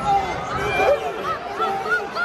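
Wrestling shoes squeaking on the mat in a quick run of short squeals as the wrestlers scramble, over arena chatter.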